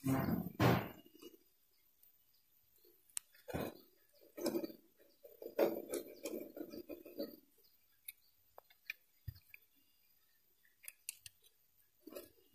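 Scattered light metallic clicks and a dull knock from hand tools and metal parts as a technician fits a cam-setting tool to the reciprocator mechanism of an embroidery machine head.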